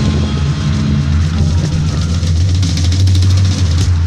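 1971 Triumph 650 Tiger's parallel-twin engine running at idle, a steady low, rapid pulsing exhaust note.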